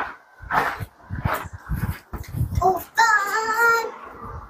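A young child's high voice, a short rising call and then one held sung note lasting nearly a second, about three seconds in.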